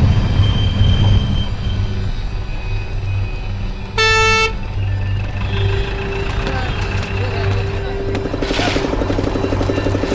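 A bus engine drones low and steady. A vehicle horn toots once, briefly, about four seconds in.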